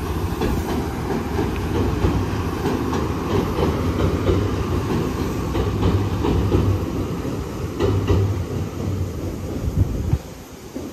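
Passenger train crossing a steel girder railway bridge overhead: a loud, heavy rumble of wheels with irregular clacks from the rails, which stops abruptly near the end.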